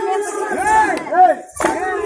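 A group of men chanting and calling out together in a Muharram folk song, their calls rising and falling in pitch, with a short break about one and a half seconds in.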